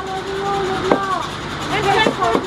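A group of voices chanting in long, gliding held notes, with a single sharp beat on a hand-held frame drum about a second in.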